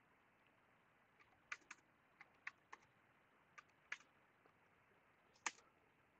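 Faint, scattered computer keyboard keystrokes, about eight separate clicks over near silence.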